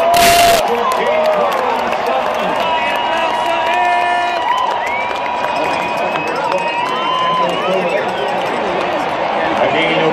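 Large football-stadium crowd cheering and yelling, with voices holding long drawn-out shouts over the noise. A short, loud rush of noise on the microphone right at the start.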